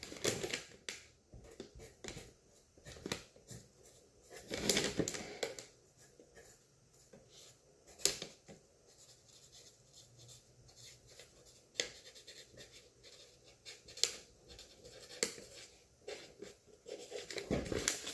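Pen writing on the paper side of a peel pouch: faint scratching strokes in short, scattered bursts. A few louder rustles come from the pouch being handled.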